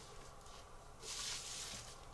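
Plastic curve ruler sliding over pattern paper: a brief, soft rubbing scrape about a second in, lasting under a second.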